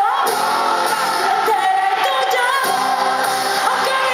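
A woman singing live into a microphone over a full pop-rock band, amplified through a concert hall's sound system.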